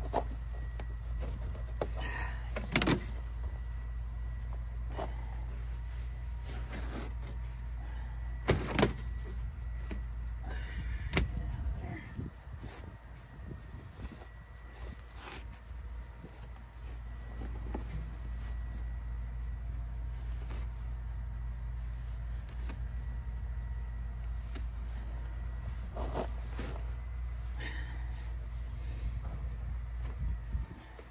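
Scattered knocks, clicks and clatter of hands-on work in a van's floor area, over a steady low hum.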